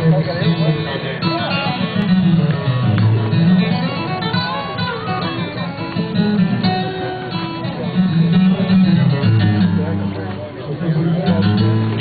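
Acoustic guitar strummed, bass notes shifting under the chords, played through the stage sound system during a sound check.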